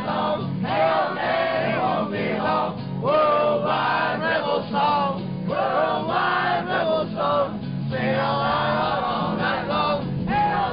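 A man singing a rousing protest song to a strummed acoustic guitar, with a crowd singing along in a loose group chorus.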